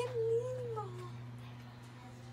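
A woman's single drawn-out exclamation: one wavering note that slides down in pitch and fades out about a second in.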